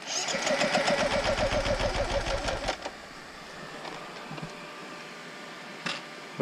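Dirt bike engine running with a fast, even beat, then cutting out abruptly about two and a half seconds in.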